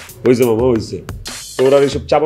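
A man speaking Bengali in an animated voice, over background music.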